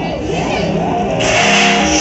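Loud live band music led by electric guitar, its notes gliding up and down. About a second in, a noisy, hissing wash comes in on top and the playing gets fuller.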